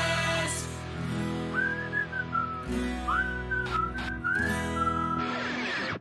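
Whistled melody with short rising and falling glides over held backing chords, the whistled outro of a cartoon theme song. The music cuts off suddenly at the end.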